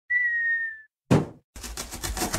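Cartoon sound effects: a short whistle held on one note, dipping slightly at the end, then a single thump, then a fast run of scraping strokes as a box cutter blade slices through a cardboard box.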